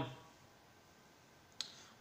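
Quiet room tone in a pause between spoken sentences, broken by a single short click about one and a half seconds in.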